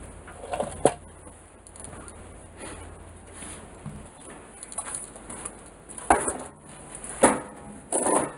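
Handling clatter and a few sharp knocks as a small homemade steel cart on gear-wheel casters is set down on a concrete floor. The two loudest knocks come near the end.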